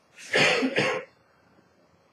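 A short, breathy burst of a man's voice into a handheld microphone, under a second long, as he breaks off mid-story with a broad smile.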